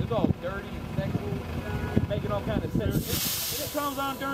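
Voices talking on a city sidewalk, with a sharp burst of hissing air lasting about a second near the end.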